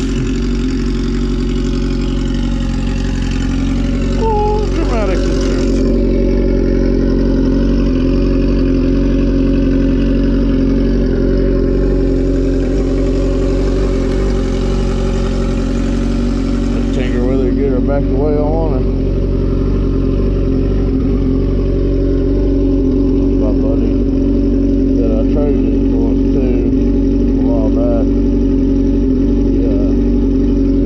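Stunt motorcycle engine idling steadily while it warms up on a frosty morning, its exhaust steaming.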